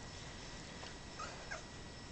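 Two short, high squeaks from two-week-old Brittany puppies nursing, a little over a second in and again just after; the second falls in pitch. A faint steady hiss lies beneath.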